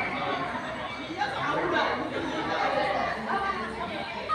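Indistinct chatter of several people talking at once, no single voice standing out.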